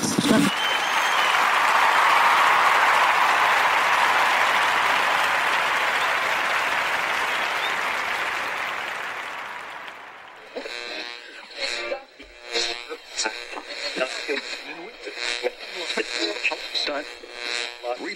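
A rushing hiss of noise swells up over the first couple of seconds and fades away by about ten seconds in. Then a choppy, garbled voice with a radio-like quality comes in, too unclear to make out words.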